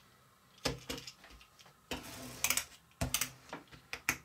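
A few light clicks and taps as a tiny plastic pull-back toy car is handled, wound back and set down on the plastic track.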